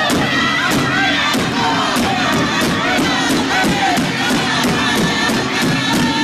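A powwow drum group singing loudly in unison around a large bass hand drum struck together with drumsticks, a steady beat a little under two strokes a second, with the surrounding crowd singing along.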